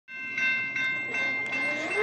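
Railroad grade-crossing warning bell ringing in a steady rhythm, about two and a half strikes a second, as the crossing signals activate for an approaching train.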